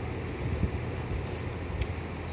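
Wind buffeting the microphone outdoors: a low, unsteady rumble with a faint tick near the end.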